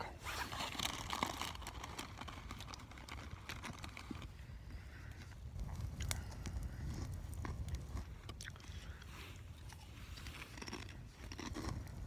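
Someone chewing Doritos tortilla chips close to the microphone: irregular crunches over a low rumble.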